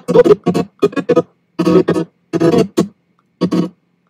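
Playback of a recorded acoustic guitar and vocal performance, heard in short choppy snatches broken by silent gaps, the sign of the clip being skimmed along the editing timeline.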